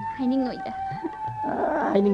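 Voices with pitch that bends and wavers, over a steady held background music note. A short hiss comes in during the second half.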